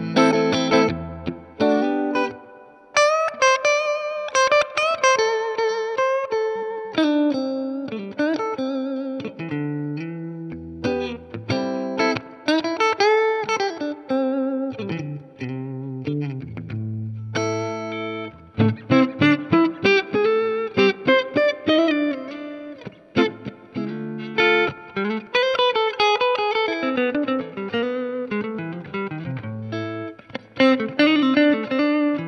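Fender Custom Shop 1968 Heavy Relic Stratocaster electric guitar played through a Fender '65 Deluxe Reverb reissue tube combo amp. It plays single-note phrases with bends and vibrato, mixed with strummed chords.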